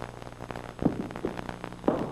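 Ball rolling down a wooden game runway, a dense run of small rapid clicks and rattles, with a studio audience's short rising 'oh' about a second in and again near the end as it reaches the target rings.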